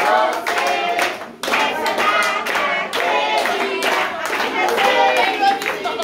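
A group of people clapping their hands in a steady rhythm while singing together, as for a birthday song.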